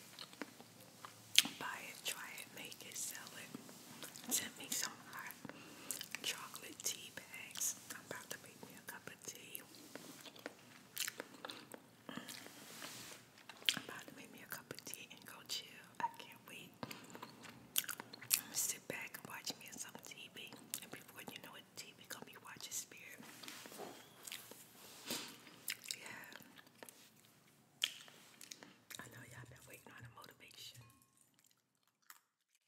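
Close-miked mouth sounds of a person chewing a mouthful of instant cup noodles: wet smacks and sharp clicks, irregular and continuing throughout.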